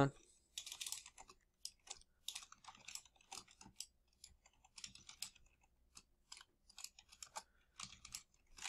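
Faint keystrokes on a computer keyboard, typed in quick uneven runs with short pauses.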